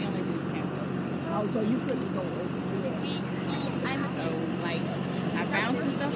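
Farm tractor engine running steadily as it pulls a hay-ride wagon, a low even drone under faint voices of the riders.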